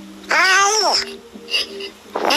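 A single high-pitched cry, under a second long, rising and then falling in pitch, over faint steady background tones.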